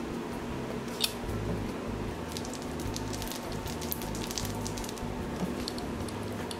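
Plastic-pinned uncapping roller rolled over a capped honey frame, its pins puncturing the beeswax cappings with a soft, sticky crackle of many small clicks, thickest around the middle.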